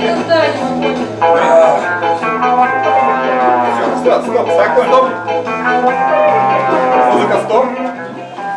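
Background music: a song with a sung voice holding long, gliding notes over a steady bass line of about two notes a second.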